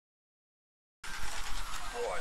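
Silence for about the first second, then the outdoor background noise of an RC racing pit area cuts in abruptly: a steady hiss and low rumble, with a short rising whine near the end.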